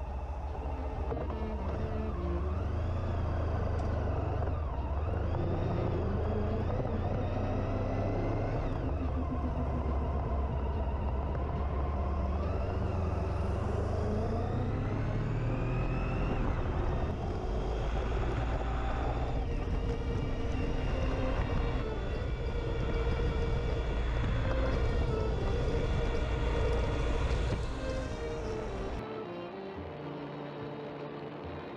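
Motorcycle riding at speed on a motorway, recorded on board: steady engine, wind and road rumble, with a rising whine as the bike accelerates around the middle. The sound cuts off sharply shortly before the end.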